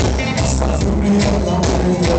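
Live reggae band playing: drum kit, bass and electric guitar with keyboards, a steady beat of drum strokes, heard loud from the audience.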